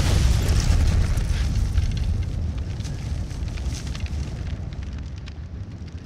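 Explosion and fire sound effect from the FxGuru app: the deep, continuous rumble of the blast's aftermath and burning flames, with scattered crackles, slowly fading.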